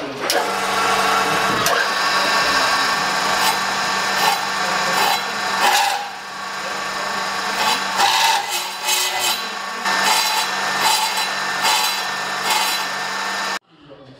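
Metal-cutting circular cold saw running, its blade grinding and scraping into a mild steel bar with a steady motor hum and a shrill, uneven cutting noise that cuts off suddenly near the end. The saw is not cutting properly: the operator thinks it needs a new blade and that the coolant flow is not effective.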